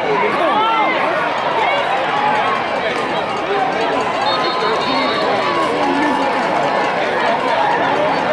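A football crowd of many voices shouting and talking at once, a steady din with no single voice standing out.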